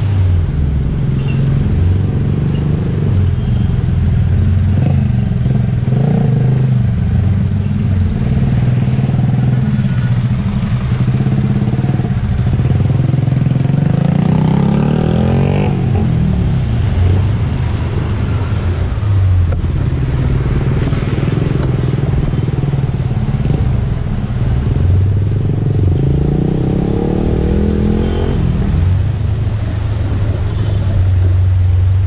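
Motorcycle engine running while riding in city traffic. Its note rises as it speeds up about halfway through and again near the end, then drops back each time.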